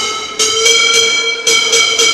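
A break in an electronic dance-routine music track: a held, buzzy synth tone with the bass dropped out, punctuated by a couple of sharp hits.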